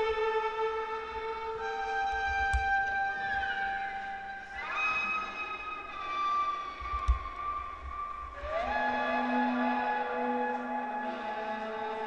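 Solo violin playing slow, long held notes, sliding up in pitch into a new note about five seconds in and again near nine seconds. Two short knocks sound about two and a half and seven seconds in.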